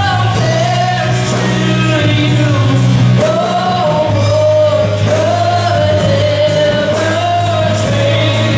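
A live worship band with drums, keyboard and guitars plays a rock-style song, and a voice sings long, held notes over a steady bass with cymbal hits.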